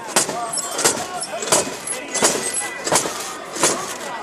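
Metal fittings on a wooden mikoshi clanking in a steady rhythm, about three clanks every two seconds, as the bearers shake the shrine on its poles, with the bearers' chanting voices between the clanks.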